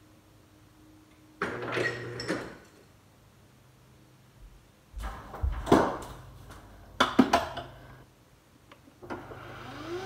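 A refrigerator door ice dispenser runs briefly, with ice cubes clattering into a glass. A few loud knocks and clinks follow in the middle. Near the end an espresso machine's pump starts up with a rising whine.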